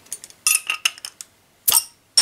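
Metal bottle opener clinking against the crown cap of a glass beer bottle in several small metallic clicks, then one louder, sharper snap near the end as the cap comes off.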